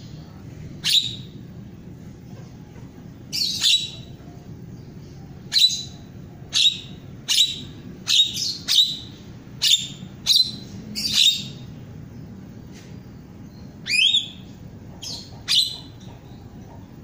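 A caged jalak (starling/myna) calling: about fifteen short, loud calls, singly and in quick pairs, with a gap of about two seconds before the last few.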